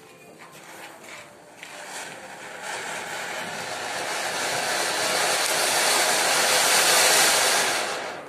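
A ground firework fountain spraying sparks with a rushing hiss that builds from about two seconds in, grows steadily louder, and cuts off sharply just before the end as the fountain burns out.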